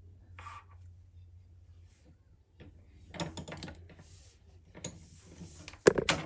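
Folded milliskin stretch fabric being handled and positioned on the bed of an industrial sewing machine: soft rustling and small knocks, with a sharp click near the end that is the loudest sound, over a faint steady low hum.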